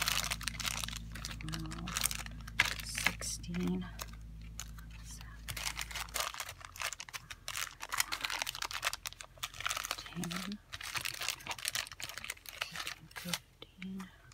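Small plastic zip-top bags of beads rustling and crinkling as they are picked up and sorted by hand, with many small clicks. A few brief hums from a voice, and a low steady background hum that cuts off about six seconds in.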